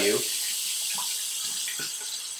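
Bathroom tap running in a steady stream into the sink, with a couple of faint clicks.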